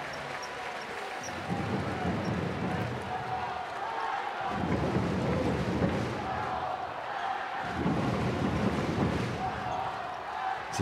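Basketball arena crowd noise, swelling and easing in waves, with a ball being dribbled on the hardwood court.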